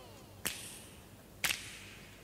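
Two sharp cracks about a second apart, each with a short ringing tail, struck in a quiet break of the dance song's soundtrack.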